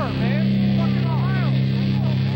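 Hardcore band playing live through amplifiers: a low, droning guitar and bass chord held steady, with a voice shouting over it in short rising-and-falling yells.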